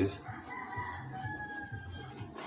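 A bird's long drawn-out call in the background, gliding slightly down in pitch and lasting about a second and a half.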